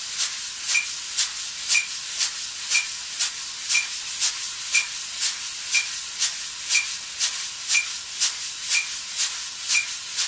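Wire drum brushes swept in circles on a coated drumhead, a continuous swishing with about two strokes a second, in time with a metronome beeping once a second. The brushes are played at double time against the beat, rubbed so each stroke is heard as a sound with length rather than a point.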